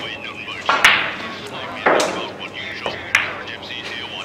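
Pool balls clacking as shots are played on a pool table: three sharp clacks about a second apart, the first the loudest, over low voices.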